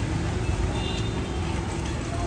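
Steady low rumble of road traffic and idling vehicles, with a faint steady hum.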